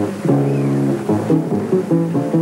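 Jazz bass playing a run of low plucked notes, one of them held for about half a second early in the run, in a live small-group jazz performance.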